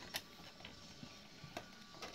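Plastic dollhouse parts being fitted together: a few faint clicks and scrapes as a plastic panel is pushed into the plastic frame, with one click just after the start and another about one and a half seconds in.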